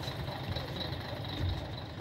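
Bus engine idling with a low, steady rumble, and a faint high beeping tone pulsing over it.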